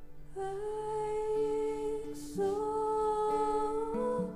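A woman's voice into a microphone holding two long, wordless, hum-like notes, the second a little higher, with a short breath between them about two seconds in, over soft sustained guitar chords.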